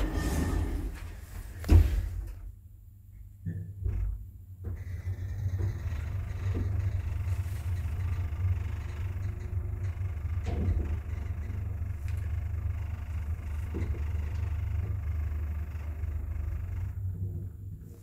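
Sliding doors of a small traction elevator car closing, ending in a sharp bump about two seconds in, followed by a thump as the car starts. The car then rides with a steady low hum and a few faint clicks, slowing and stopping about a second before the end.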